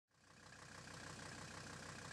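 Diesel vehicle engine running, heard faintly and fading in from silence, with a low, rapid, regular pulse.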